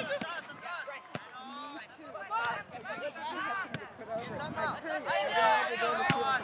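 Indistinct, overlapping voices of players and spectators calling out during a youth soccer game, with two sharp knocks: one about a second in and one near the middle.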